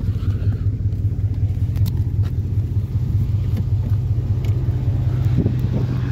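A 2001 GMC Yukon's Vortec 5.3 V8 idling steadily as a low, even hum, with a few faint clicks over it.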